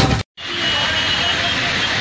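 A devotional music jingle cuts off abruptly just after the start, and after a brief gap a steady street ambience takes over: an even hiss of traffic noise with distant voices of a crowd.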